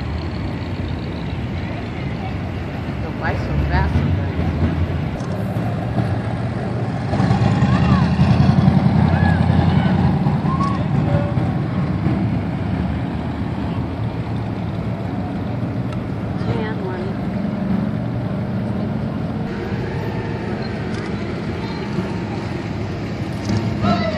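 Classic cars driving slowly past one after another, their engines and exhausts running at low speed, with one louder engine passing about seven to ten seconds in.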